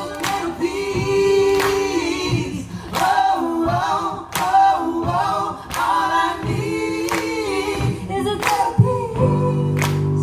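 A group of men's and a woman's voices singing together unaccompanied, kept in time by handclaps at about one every 0.8 seconds. About nine seconds in, a steady held keyboard chord comes in under the voices.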